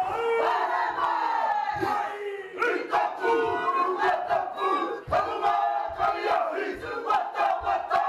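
Māori haka performance: a group of voices chanting and shouting in unison in a forceful rhythm, punctuated by frequent sharp percussive hits.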